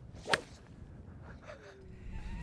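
Rescue (hybrid) club striking a golf ball off the turf: a single sharp crack about a third of a second in, a solid strike.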